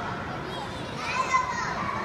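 Children playing: a background babble of young children's voices, with a higher child's voice rising over it from about a second in.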